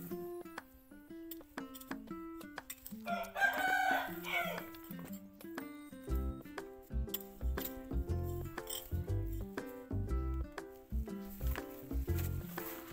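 A rooster crows once, about three seconds in, the loudest sound here, over background music of short plucked notes; a deep bass line joins the music about halfway through.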